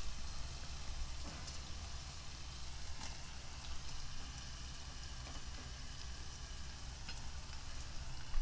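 Tomato-onion masala sizzling faintly in a pot, with a few soft taps as diced paneer goes in.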